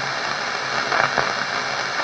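Steady hiss with a low hum, the background noise of a radio broadcast recording, with no speech over it.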